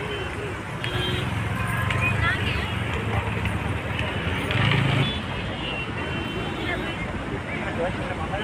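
Indistinct voices of people talking over a steady rumble of road traffic.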